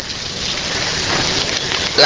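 A steady rushing noise with a rain-like hiss, swelling a little in the first half second and then holding even.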